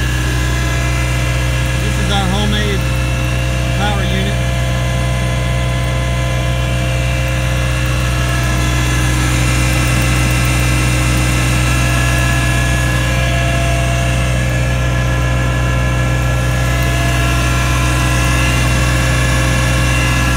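Tractor diesel engine running steadily, driving a PTO-mounted hydraulic gear pump, a constant low hum with steady whining tones over it. The hydraulic system is running at low pressure for a leak check.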